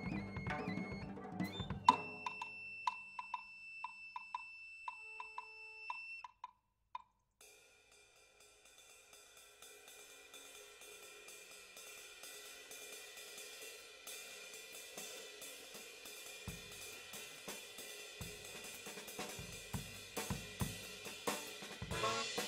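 Jazz drum kit: after a saxophone line with drums at the start and a sharp stroke about two seconds in, a ringing tone with soft taps about twice a second, then, after a brief break in the sound, dense cymbal and hi-hat strokes that grow steadily louder, with bass drum thumps joining in the second half.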